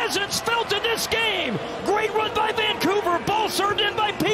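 Many voices shouting and cheering over one another in a stadium, with scattered claps and thumps, in celebration of a goal.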